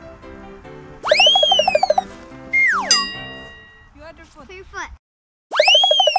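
Cartoon sound effects edited over light background music: a loud warbling boing about a second in, then a whistle that slides down in pitch and ends in a ringing ding. A second boing comes near the end, after a brief silence.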